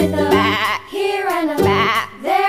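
Sheep bleating twice, each call quavering, over background music.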